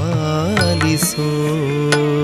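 Carnatic-style Kannada devotional music: a melody line glides between notes and holds them over a steady drone, with a couple of drum strokes, the clearest near the end.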